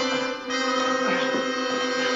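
Background music built on one long held note.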